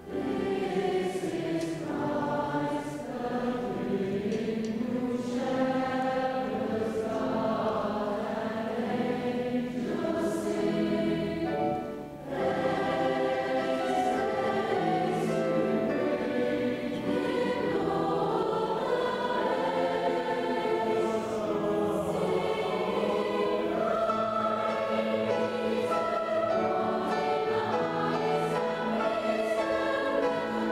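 A large school choir of young mixed voices singing together in full chorus, with one brief break between phrases about twelve seconds in.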